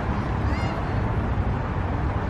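Steady outdoor background noise, a low rumble with a lighter hiss over it, and a faint pitched sound briefly about half a second in.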